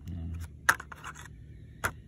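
Two sharp, short clicks about a second apart, with a brief spoken "uh" at the start.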